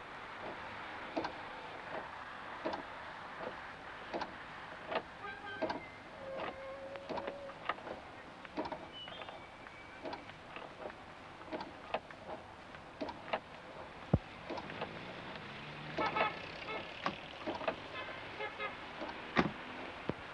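A car heard from inside its cabin: a steady low running noise with scattered light clicks and knocks.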